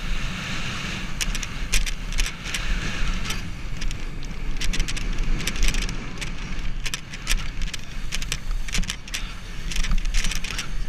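BMX bike racing down a paved track: a steady low rumble of wind and tyres with rapid, irregular rattling clicks from the bike.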